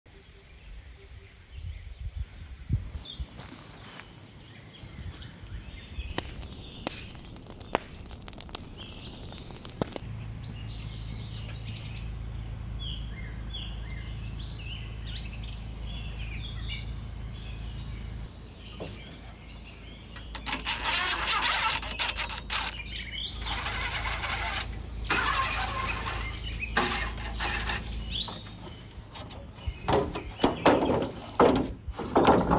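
Small birds chirping and calling outdoors. A steady low hum comes in about a third of the way through, and in the last third stretches of loud hissing noise come and go over it.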